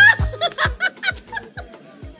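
Background music with a steady drum beat and bass, with a high-pitched laugh over it that fades out about halfway through.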